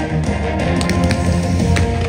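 Loud show music with a heavy bass line, with several sharp cracks standing out over it.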